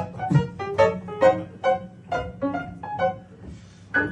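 Piano played solo: a quick line of single struck notes, about four a second, stepping up and down in pitch and growing quieter near the end.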